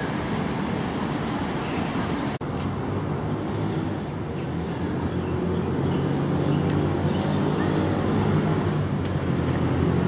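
Steady road traffic noise from passing cars and buses, a continuous low rumble with a momentary break about two and a half seconds in.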